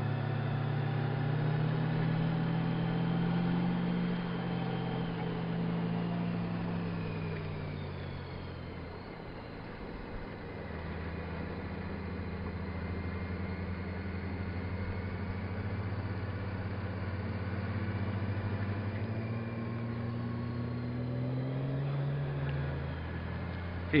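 Touring motorcycle engine running at road speed. Its pitch climbs in the first few seconds, eases off into a quieter lull around eight to ten seconds in, then holds steady and climbs again near the end as the throttle is rolled on and off through a run of curves.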